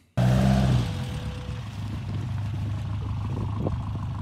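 Engine of a small off-road rally car running as the car drives slowly past, a steady low hum that is louder for about the first half second.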